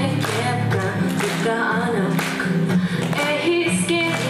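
A young woman singing a pop song while strumming an acoustic guitar.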